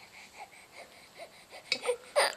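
A seven-week-old baby cooing: a few soft little vocal sounds, then a louder one near the end.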